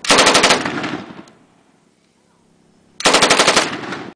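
Tripod-mounted PKM belt-fed machine gun (7.62×54mmR) firing two short bursts of about six or seven rounds each. The first burst comes right at the start and echoes away over about a second. The second starts about three seconds in.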